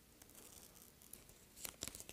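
Frisket masking film being lifted with a craft knife and peeled off watercolour paper: faint crackling, with a louder burst of crackles near the end.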